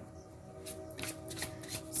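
Tarot cards being shuffled by hand: a run of quick, sharp card clicks starting about half a second in, over soft background music with steady held tones.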